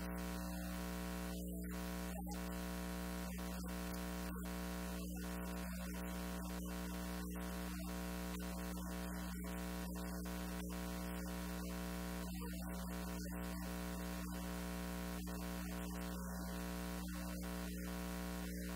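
A steady electrical buzzing hum in the recording at an even level, made of many steady tones stacked together; the lecturer's voice is not heard over it.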